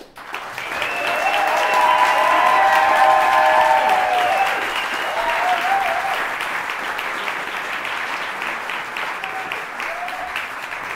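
Audience applause breaking out all at once at the end of a song. It swells over the first couple of seconds with voices cheering, then settles into steady clapping.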